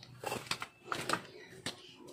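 Footsteps of people in flip-flops on a concrete path: a string of soft, irregular clicks.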